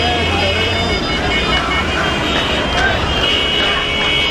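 Busy street: many people's voices over road traffic, with a low engine rumble that stops about a second in and steady high tones running through the mix.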